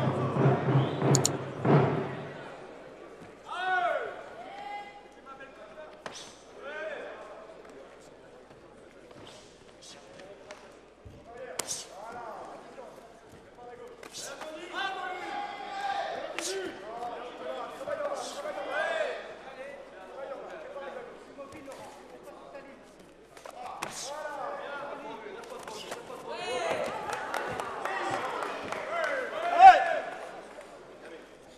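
Shouting from corner men and spectators at a full-contact karate bout, with sharp smacks of kicks and punches landing now and then. The shouting grows louder near the end as the fight goes to the ground.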